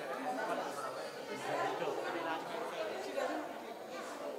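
Indistinct chatter: several people talking at once, with no one voice standing out.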